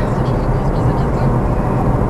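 Car cabin noise while driving: a steady low engine and road rumble heard from inside the car.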